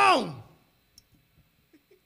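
A man's drawn-out call, its pitch falling as it fades out within the first half second, then a few faint, scattered clicks.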